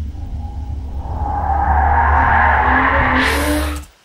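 Car drifting sound effect standing in for a crowd reaction: a swelling rush of tyre noise over a deep, steady rumble. It builds over the first two seconds, brightens into a hiss near the end, then cuts off.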